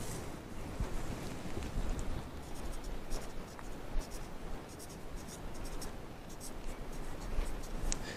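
Marker pen writing on a plant label: a run of short, light scratching strokes.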